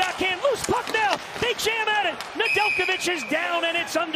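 Hockey broadcast commentary over rink sound, with sharp clacks of sticks and puck. About two and a half seconds in, a steady shrill tone sounds for just under a second: a referee's whistle stopping play.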